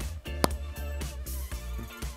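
Background music with a steady bass line and sustained tones, and one sharp click about half a second in.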